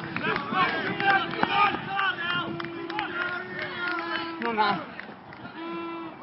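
Indistinct shouts and calls from several voices across a football pitch, with a few sharp knocks among them; the calling thins out after about five seconds.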